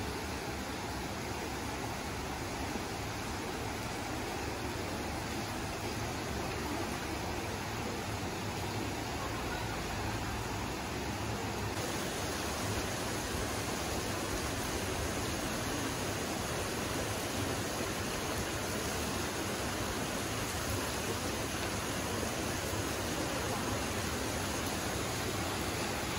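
Shallow mountain river running over stones and riffles: a steady rush of flowing water.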